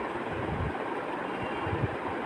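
Parshe fish sizzling steadily as they fry in hot oil in a wok, with a couple of soft knocks from a spatula turning them.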